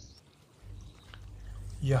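Faint trickle of water flowing in a concrete falaj irrigation channel, over a low steady rumble. A man's voice starts near the end.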